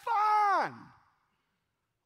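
A man's voice drawing out the single word "fine" in a long falling glide that trails off about a second in, followed by about a second of near silence.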